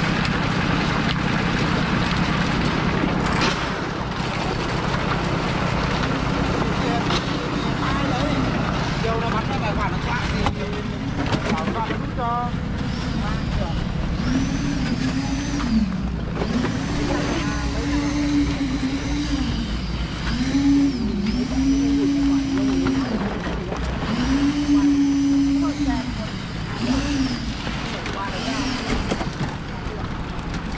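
Motorised drum concrete mixer's engine running steadily. From about halfway, a pitched whine rises, holds for a second or two and drops back, about eight times over, like a motor being revved up and down.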